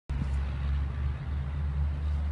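Low, steady engine rumble of a nearby motor vehicle, beginning abruptly as the sound comes in.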